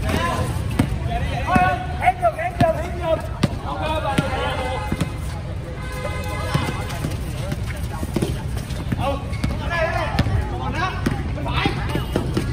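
Basketball bouncing on a hard court in irregular dribbles, under players' shouts.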